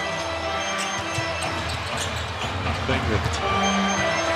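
A basketball being dribbled on a hardwood arena court, a few scattered bounces, over steady arena music and crowd noise.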